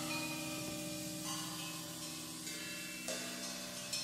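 Quiet improvised jazz: sustained low piano notes ringing, with a few soft cymbal strokes, about a second in and twice near the end.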